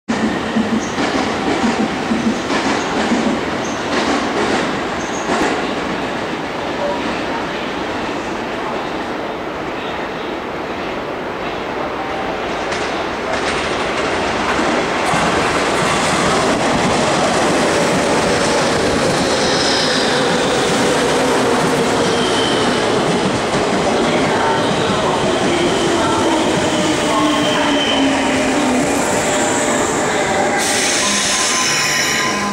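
A JR 201 series electric commuter train pulls into a station platform. The rumble and clatter of its wheels grows louder from about halfway. Over the last several seconds a motor whine falls steadily in pitch as the train brakes and slows.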